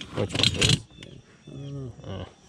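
Old metal hand tools clinking and clattering against each other in a plastic basket as a hand rummages through them, a quick run of knocks in the first second.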